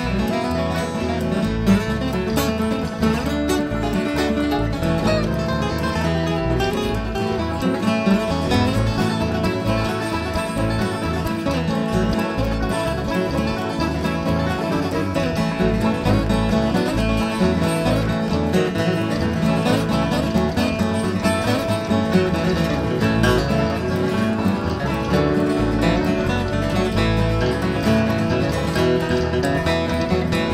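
Instrumental bluegrass-style music on plucked acoustic strings, the guitar most prominent.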